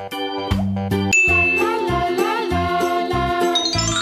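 Cheerful children's background music with a bass line and bright chiming notes. A new phrase starts about a second in, and a quick rising run of chimes comes near the end.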